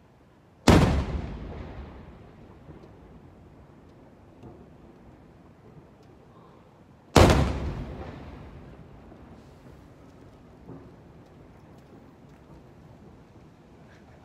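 Two aerial firework shells bursting about six seconds apart, each a sharp boom followed by an echo that fades over a second or two.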